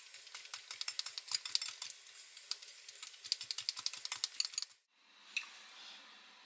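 A hand mixer's wire whisk beating dry crushed Oreo crumbs in a glass bowl: rapid, irregular clicking and ticking as the wires strike the glass and the crumbs. It stops abruptly a little under five seconds in, leaving faint room tone and a single click.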